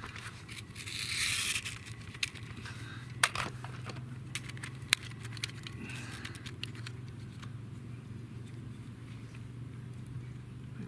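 Handling noise of a red plastic barrel cooler being fitted into an AR-15's receiver to cool a hot barrel: scraping and rustling with a few sharp clicks.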